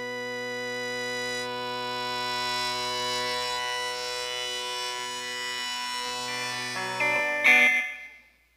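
Instrumental rock music on a long held synthesizer chord whose upper tones sweep slowly. Near the end the chord changes quickly a few times, swells to its loudest, then drops away right at the close.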